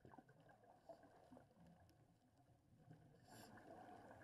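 Very faint, muffled underwater noise heard through a camera housing: scuba divers' regulators letting out exhaled bubbles, with a brief louder burst of bubbles about three seconds in followed by a steadier faint rush.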